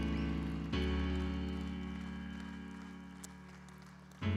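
Background music of held chords that change just before a second in, then slowly fade.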